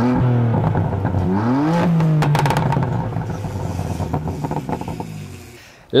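A car engine revving up twice, the second rise about a second and a half in, then settling into a steady run that fades away toward the end. A short rattle of clicks comes just after two seconds.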